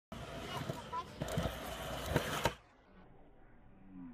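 Open-air skatepark ambience: a steady rush with faint distant voices and a few short clicks, cutting off abruptly about two and a half seconds in to near silence.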